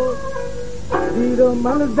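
Folk song music with a plucked string instrument carrying a wavering melody. A new strum or pluck sets in about halfway through.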